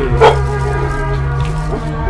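Hip-hop backing track with steady sustained bass. A single loud dog bark cuts in about a quarter second in.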